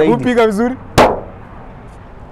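A man's voice briefly, then a single loud, sharp crack about a second in that fades quickly.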